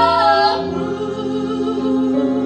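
A woman and a man singing a musical-theatre ballad duet with long held notes; a high note with vibrato ends about half a second in, giving way to steadier lower sustained notes.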